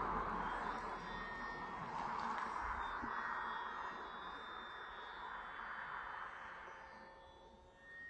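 A passing car's road noise fading away as it drives off, with a faint steady whine from the small electric motor and propeller of a RC plane flying overhead.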